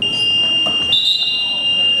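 Gymnasium scoreboard buzzer sounding one long, steady high-pitched tone, with a second, slightly higher tone joining about a second in, marking the end of the period on the game clock.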